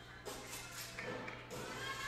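Floor-exercise routine music playing over the gym's speakers, with a few light thuds in the first second.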